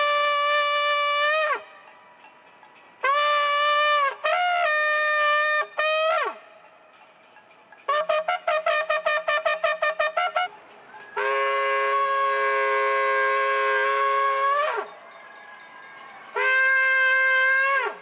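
Ram's-horn shofar blown in a sequence of calls: a long blast, a few shorter broken blasts ending in an upward slide, a run of rapid staccato notes lasting about two seconds, then a long blast of about three and a half seconds and a final shorter one. The notes are loud and bright, with the pitch dipping or bending at the ends of the blasts.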